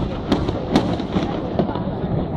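Fireworks display: aerial shells going off in a rapid series of sharp bangs, about two a second.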